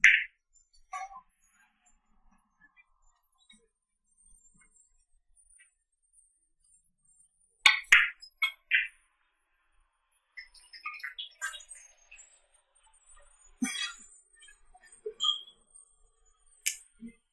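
Hard billiard balls clicking against each other: one loud click right at the start, then a group of sharp clicks about eight seconds in. Scattered lighter clicks and knocks follow, with another loud click near the end.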